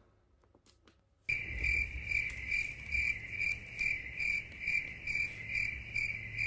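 Cricket chirping sound effect: a steady high chirp pulsing about three times a second, starting abruptly about a second in after a near-silent pause, with a low rumble under it.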